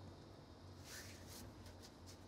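Near silence: faint room tone with a low steady hum and a few faint soft clicks about a second in.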